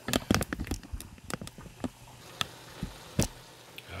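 Cabbage frying in a pot, crackling and popping: a quick run of pops in the first second, then single pops every half second or so.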